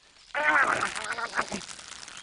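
A cartoon rat's raspy, nasal character voice, starting about a third of a second in and running for over a second. It is either words the recogniser missed or a grumbling vocal noise.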